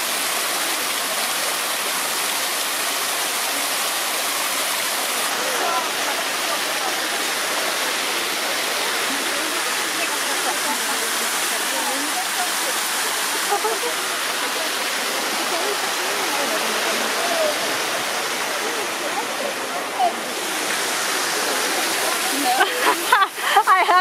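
Fountain water splashing steadily into its basin, an even rushing that does not let up. Voices and laughter come in near the end.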